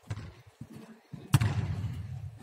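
A football struck hard about a second and a half in, a sharp loud thud that rings on in the hall, after a softer knock at the start.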